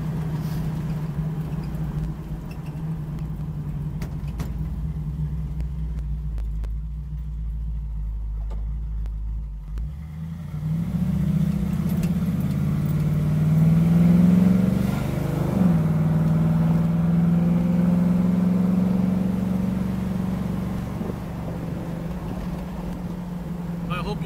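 A 1972 Camaro's 350 V8 with headers, heard from inside the cabin while driving: a steady low engine note at first, then about eleven seconds in the note rises and grows louder as the car accelerates. A few seconds later the pitch drops sharply at an upshift of the Turbo 350 automatic, and the engine settles into a steady, louder cruise.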